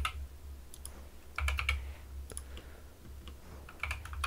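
Computer keyboard keys tapped in a few short clusters of clicks about a second apart, over a steady low hum.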